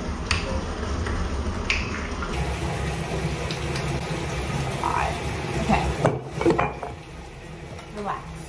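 A glass bottle of apple cider vinegar being opened and poured to mix a clay face mask, with small clicks early on and a cluster of louder knocks and clinks of bottle and bowl about five to six seconds in, over a steady low background noise.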